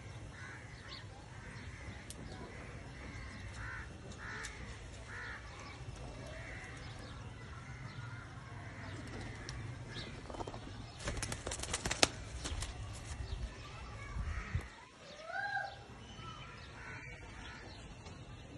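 Outdoor birdsong around a pigeon loft: short arched bird calls come every few seconds over a steady low rumble. Near the middle there is a burst of quick flapping clatter, pigeons' wings beating inside the loft.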